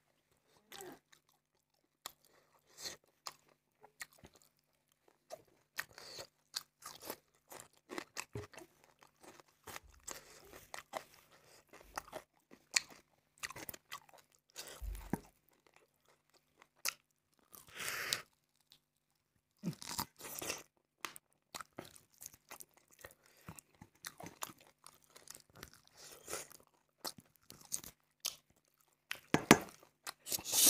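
Close-up mouth sounds of someone eating rice and curried chicken by hand: irregular wet chewing, smacking and crunching, in short spells separated by brief pauses.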